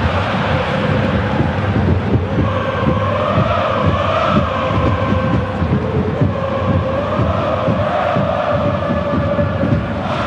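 A crowd of spectators chanting together in long, slowly wavering notes over a steady low rumble and clatter.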